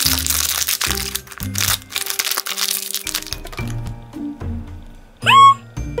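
Crinkling and crackling of a thin plastic wrapper torn and pulled open by hand, loudest in the first two seconds and then in short spurts, over background music. A short rising laugh near the end.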